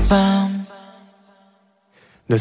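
Pop song break: a male voice holds one steady sung note over fading backing, which ends about two-thirds of a second in and leaves a pause of near silence.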